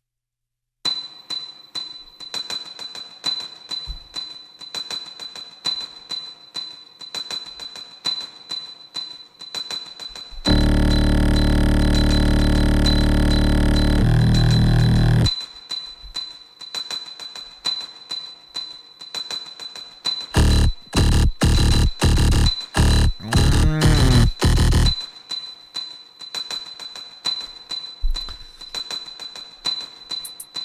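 Loop-station beatbox performance: looped and effected vocal beat sounds starting about a second in, a light fast ticking pattern over a high steady tone. In the middle a loud, dense, bass-heavy sustained layer comes in for about five seconds, and later a run of loud choppy stuttered hits, before the light ticking pattern returns.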